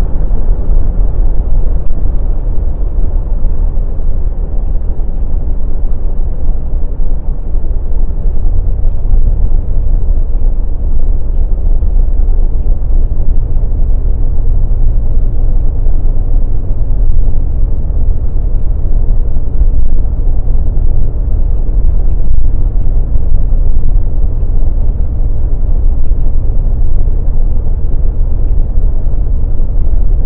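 Steady low rumble of a car at highway speed, heard from inside the cabin: tyre, road and engine noise.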